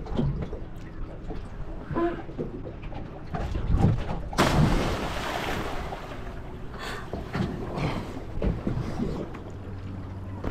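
A person jumps off a boat's bow into a lake: a few knocks on the boat, then a big splash about four and a half seconds in that dies away over a second or two.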